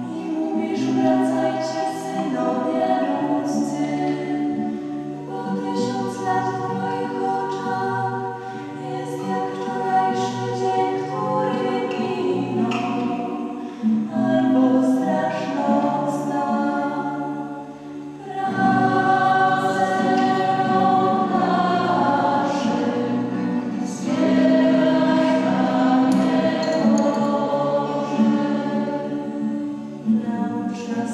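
Two girls singing the responsorial psalm into a microphone in a church. The notes are sustained and come in phrases, with short pauses about 14 and 18 seconds in.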